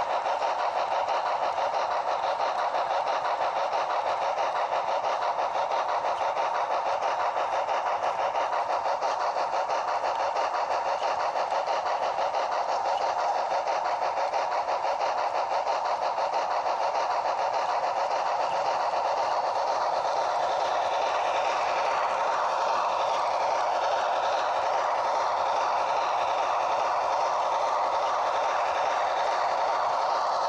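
Model train running along its track, heard up close from a camera riding on it: a steady, even rattle of wheels on rail and the running motor. A higher hiss joins in about two-thirds of the way through.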